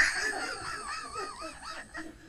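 A man's hearty laughter: a run of high, wavering laugh pulses, loudest at the start and fading.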